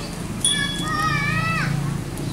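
Children's voices outdoors: a short high chirp, then a high-pitched drawn-out child's call about a second long that breaks off sharply, over a steady low hum.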